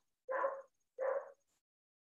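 A dog barking twice, short muffled barks about half a second apart.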